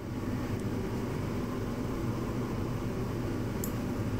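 Steady low background hum with no change in level, with two faint clicks about three seconds apart.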